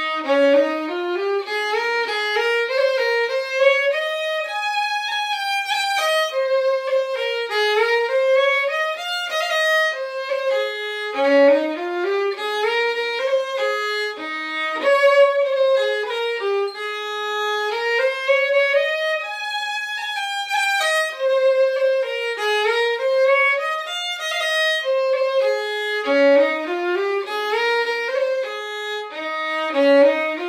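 Solo fiddle playing an Irish traditional tune unaccompanied, the melody moving in continuous rising and falling runs of notes.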